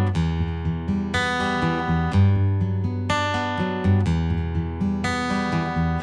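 Taylor acoustic guitar playing the instrumental intro of a slow ballad. A new chord is struck about once a second and left ringing.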